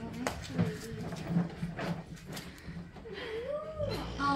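Indistinct voices without clear words, with a few sharp knocks over a steady low background hum.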